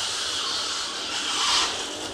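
Power wheelchair's drive motors and wheels running as the chair turns in place on a hard floor, a steady hiss that swells slightly about one and a half seconds in.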